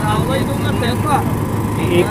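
Several people talking at once in the background, with no single voice clear, over a steady low hum.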